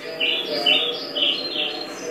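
Birds chirping in the opening of a song's soundtrack: a series of short, high chirps over a low steady tone, played through a TV's speakers.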